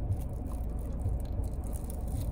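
Steady low rumble of a car's cabin at rest, with faint scattered light ticks over it.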